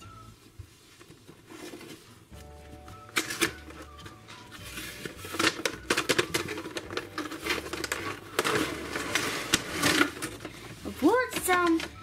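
Toy packaging being unboxed by hand: cardboard box flaps and a clear plastic blister tray crackling, rustling and clicking as they are handled. The handling starts about three seconds in and gets louder and busier about five seconds in, over faint background music.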